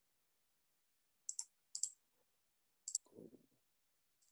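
Three faint, light clicks, about 1.3, 1.8 and 2.9 seconds in, the last followed by a brief low rustle.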